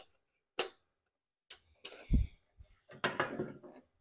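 Scattered sharp clicks with a dull knock about halfway through, then a flurry of light clicks, as hands handle and work the carburetor linkage and air filter base of a Honda GCV160 mower engine.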